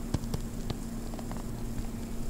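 A stylus tapping and sliding on a tablet screen while writing, heard as a few faint scattered clicks over steady background hiss and a low hum.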